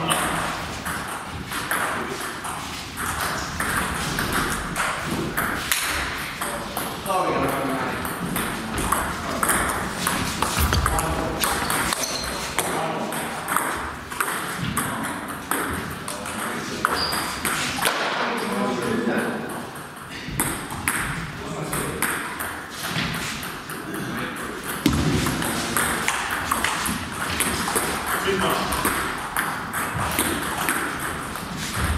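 Table tennis ball clicking off the bats and table again and again through the rallies, with people talking.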